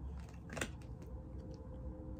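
Playing cards being handled and drawn: a few light clicks and snaps of card stock, the sharpest about half a second in, over a faint steady hum.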